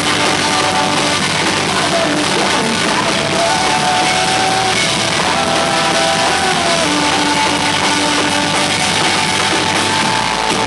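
Rock band playing live and loud: electric guitars and a drum kit, with a male singer singing into a microphone.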